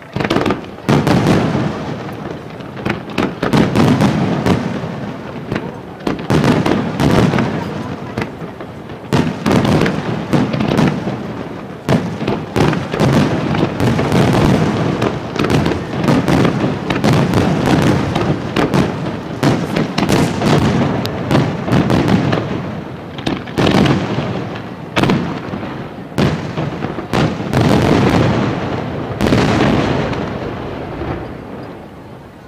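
Aerial firework shells bursting in a dense, near-continuous barrage, many sharp reports overlapping, with only brief dips between volleys.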